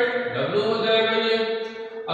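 A voice chanting in long, steady held notes, the pitch shifting about half a second in.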